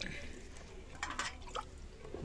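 Water pouring and dripping from a steel glass into egg curry gravy in a kadhai, faint, with a few light ticks about a second in.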